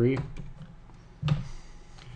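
A single sharp computer click a little over a second in: a key or button pressed to confirm a file-delete dialog.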